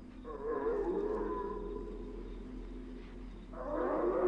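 Eerie, wavering howl-like moan from a horror film's soundtrack, held for about three seconds. It gives way near the end to a rising rushing swell.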